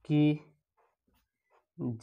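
A man's voice says a word, then a pause with only faint scratching of a marker pen writing on paper, and his voice starts again near the end.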